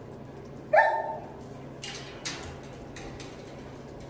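A dog gives one short, loud bark about a second in, followed by two sharp clicks, over a steady low hum from the ceiling-mounted electric heater.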